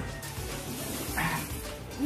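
Background music playing, with one short, higher sound a little over a second in.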